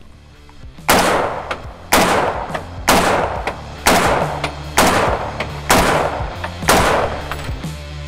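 Browning BAR MK 3 semi-automatic rifle in .308 fired seven times in steady succession, about one shot a second, starting about a second in. Each loud report is followed by a short ringing tail.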